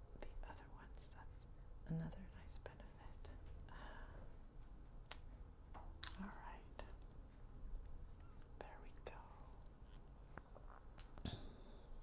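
Quiet handling of nail polish bottles and brush: a few scattered light clicks amid soft whispering.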